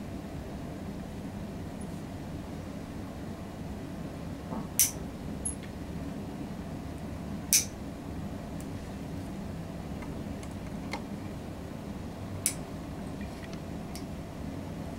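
Stainless steel toenail nippers snipping through thickened toenails: three sharp clicks a few seconds apart, with a couple of fainter ticks, over a steady low hum.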